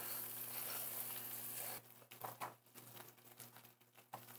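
Pecan praline, with brown sugar and butter caramelizing, sizzling softly in a small saucepan. The sizzle cuts off suddenly about two seconds in. A few faint scrapes and taps of a spatula follow as the mixture is scraped into a glass bowl.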